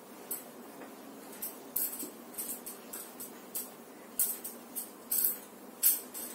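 Marker pen writing on a whiteboard: a string of short, irregular scratchy strokes, louder toward the end.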